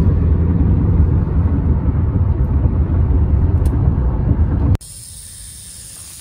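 Steady low rumble of road and engine noise inside a moving car's cabin. Near the end it cuts off suddenly to a quieter, steady high-pitched buzz: a rattlesnake rattling in warning.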